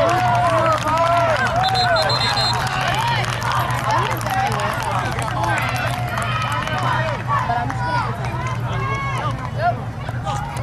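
Many raised voices overlapping, people shouting and calling out at a youth football game, over a steady low hum.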